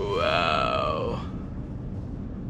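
A man's drawn-out wordless vocal exclamation, about a second long, rising and then falling in pitch, over the steady low road noise of a car cabin.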